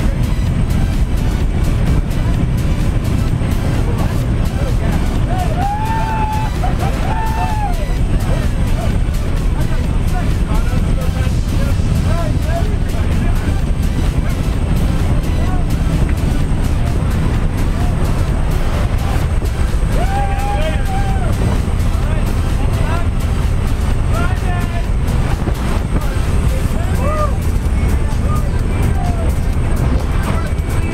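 Steady loud rush of a jump plane's engine and slipstream through the open side door, with a few short raised voices over it.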